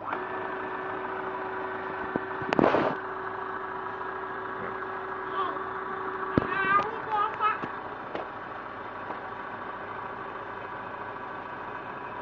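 Embroidery machine's bobbin winder motor starting and running with a steady whine as it winds thread onto the bobbin; it runs on until switched off rather than stopping by itself. A brief rustle of handling comes about two and a half seconds in, and a click about six seconds in.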